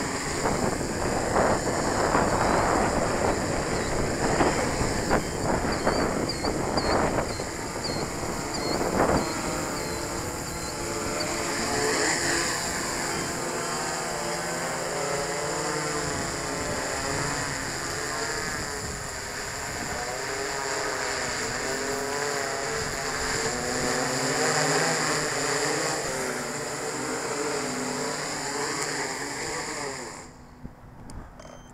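Quadcopter drone's rotors buzzing, their pitch wavering up and down constantly, with gusts of wind buffeting the microphone in the first several seconds. The sound drops away sharply at the very end as the drone sets down.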